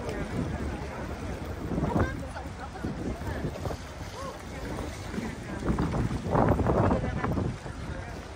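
Wind rumbling on the microphone over choppy lake water lapping against a wooden pier, with a louder stretch about two seconds in and another lasting over a second near the end.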